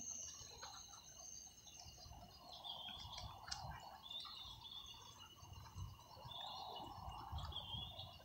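Faint outdoor night ambience: a steady thin high tone with short chirps every second or two. Under it are low thumps and rustle from the phone being carried.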